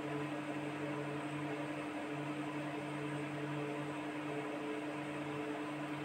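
Steady low hum with a soft hiss of background noise.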